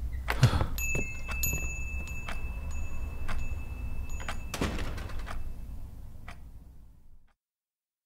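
Sound effects of someone leaving a shop: scattered footstep-like clicks and a door over a low steady hum, with a high thin electronic chime sounding on and off for about three seconds. All sound cuts off to dead silence about seven seconds in.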